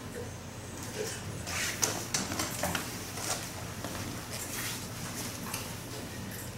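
Soft clicks, taps and rustles from a person signing: hands brushing and tapping together and clothing moving, clustered in the first half, over a low steady room hum.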